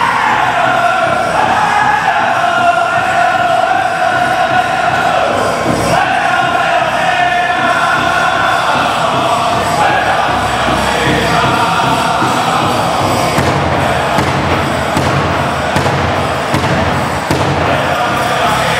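A powwow drum group singing an Anishinaabe honor song in chanted voices over steady beats of a large shared drum.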